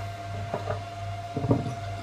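Light knocks of metal kit parts, a pulley and a steel shaft, being handled on a tabletop, twice, over a steady low hum.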